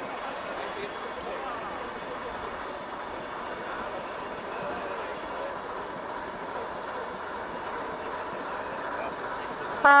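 A crowd of people chatting on a railway station platform, a steady murmur of voices. Just before the end a loud locomotive horn sounds, the horn of the class 749 'Bardotka' diesel locomotive hauling the train.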